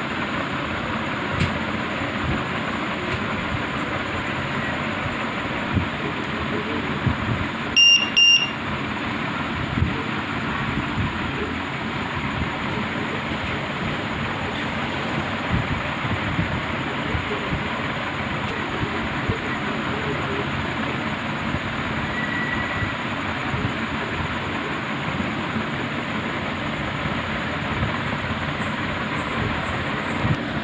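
A lipo battery voltage checker's buzzer beeps twice in quick succession about eight seconds in, as it powers up on the battery's balance lead. A steady hiss-like background noise runs throughout.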